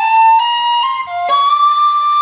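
Tin whistle playing a slow melody, the notes gliding into one another, with a brief breath about a second in followed by a long held note.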